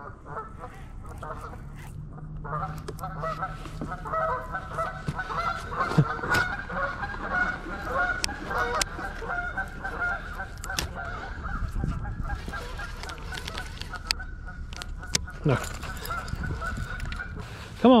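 A flock of geese honking, many calls overlapping and carrying on almost without a break, with a few sharp clicks here and there.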